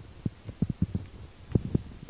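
Irregular low thumps and bumps of handling noise on a hand-held camera's microphone, several in quick succession, the loudest about one and a half seconds in.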